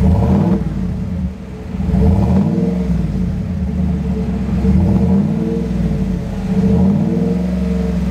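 Pickup truck engine started up and revved several times through its aftermarket exhaust, the pitch climbing and falling back with each blip of the throttle, with a short steady idle between revs.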